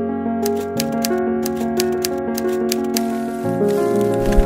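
Typewriter keys clacking in a quick run of about five strokes a second, starting about half a second in and stopping shortly before the end, over background music with sustained notes.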